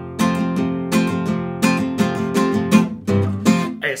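Nylon-string classical guitar strummed in a steady chord rhythm. A man's singing voice comes in right at the end.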